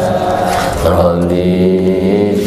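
A man's voice chanting a religious recitation through a microphone, on long, slowly gliding held notes.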